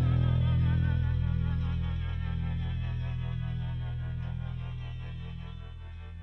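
Rock music break with no singing: a sustained chord over a steady low drone, its upper notes wavering in pitch, slowly fading away.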